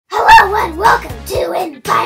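A child's high-pitched voice speaking in lively, excited phrases, over low background music.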